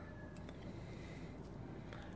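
Quiet room tone with a few faint ticks as a screwdriver slowly turns the idle mixture screw of a PWK carburetor clockwise, closing it.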